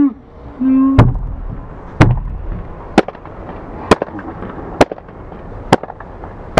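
Six sharp knocks at a steady pace of about one a second, over a low background.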